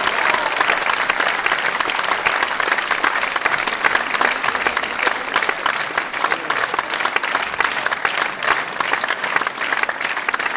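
Applause from the concert audience and the accordion orchestra on stage: dense, steady clapping.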